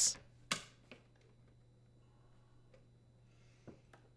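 Plastic dishwasher detergent dispenser snapping into place in the stainless inner door panel: one sharp snap about half a second in, a lighter click just after. Then near silence, with one faint click near the end.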